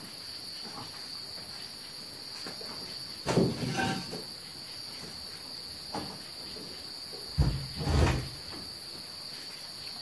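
A few dull knocks and bumps of hands on the open desktop PC's metal chassis, touched to discharge static: one about three seconds in and two close together near the end. A steady high-pitched whine or trill runs under them.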